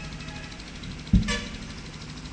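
Low background noise in a pause between speech, broken just past a second in by a single sharp thump and a brief higher-pitched pulsing sound right after it.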